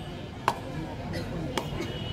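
Two sharp smacks about a second apart over faint background chatter.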